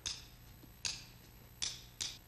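Three sharp, short clicks with a brief high ring, evenly spaced about 0.8 seconds apart, keeping a steady beat like a count-in.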